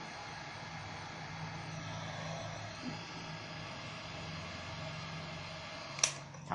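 Electric heat gun running steadily, a hiss of blown air over a low motor hum, as it shrinks a black shrink-film cap seal down onto a jar lid.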